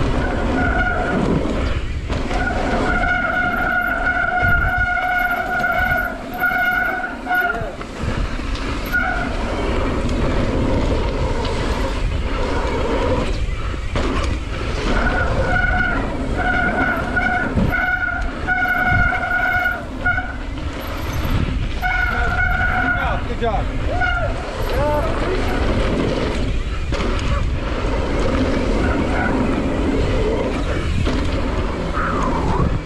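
Mountain bike descending a dirt trail, with steady wind and tyre rumble. Twice, for several seconds at a time, a steady high-pitched squeal holds at the same pitch, typical of a disc brake squealing under braking.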